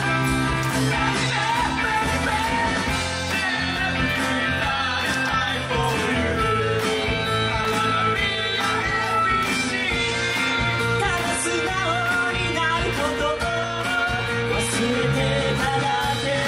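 Live rock band playing with singing: electric guitar, bass and drums keeping a steady beat, loud throughout.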